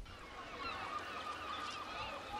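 Many short, overlapping bird calls from a flock. They start at once about when a low rumble cuts out.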